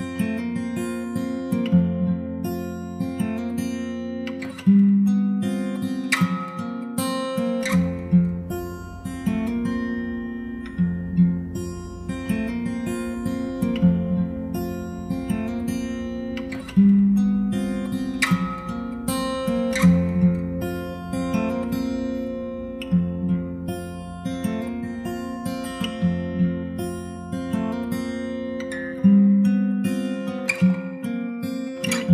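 Acoustic guitar with a capo, playing an instrumental piece of plucked notes and chords.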